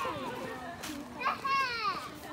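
A young child's high voice, without clear words. It ends in one long high-pitched call that falls in pitch during the second half.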